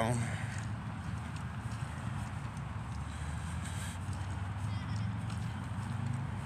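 Footsteps of a person walking, over a steady low rumble.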